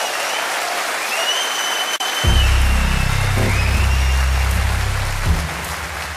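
Audience applause over live stage music. About two seconds in, a loud, deep bass part comes in suddenly, with high gliding tones above it.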